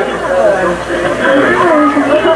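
Only speech: people talking, their words indistinct.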